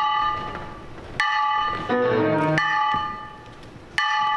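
Instrumental contemporary chamber music: bell-like struck tones ring out about every one and a half seconds, alternating with short runs of lower notes. There are no spoken words over it.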